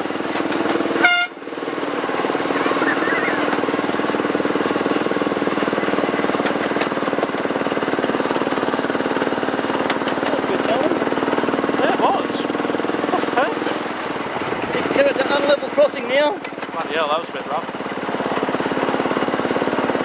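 Ride-on miniature railway locomotive running along the track, a steady hum of the running loco under fast clicking from the wheels and rails. A short horn or whistle toot sounds about a second in, and wavering higher tones come and go near the end.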